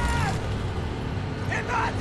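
Film soundtrack of a convoy of modified cars and trucks with engines running. There are brief shouts near the start and again near the end, under a score.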